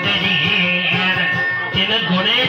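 A man singing while playing an acoustic guitar with a capo: a Visayan dayunday, a comic sung exchange, with the guitar as accompaniment.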